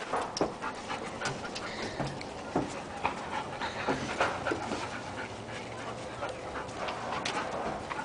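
Dogs panting and scuffling close by as they jump up on a person, with scattered short clicks and scuffs on concrete.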